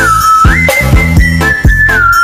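Police siren tone alternating between a lower and a higher pitch with short glides between them, over music with a steady beat.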